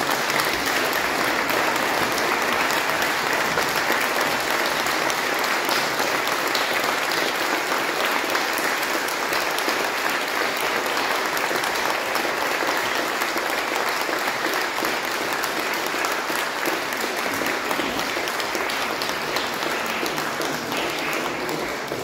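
Audience applauding, sustained and even, easing slightly in the last few seconds.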